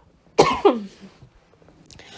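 A person coughing twice in quick succession about half a second in.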